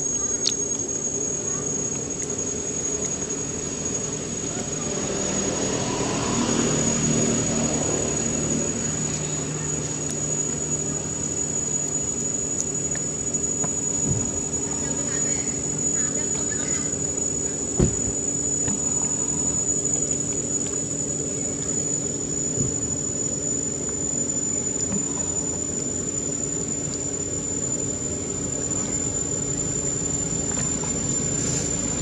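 Insects droning with one unbroken high-pitched tone, with a single sharp knock about eighteen seconds in.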